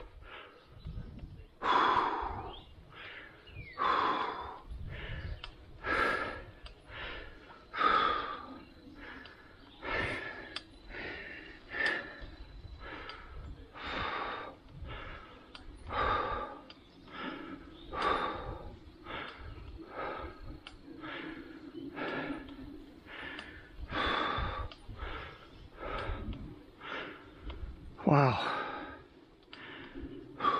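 A cyclist breathing hard while pedalling: a steady rhythm of about one breath a second, with a louder exhale every two seconds, over low wind and road noise.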